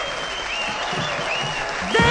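Live audience applauding after the singer's farewell. Music comes in loudly right at the very end.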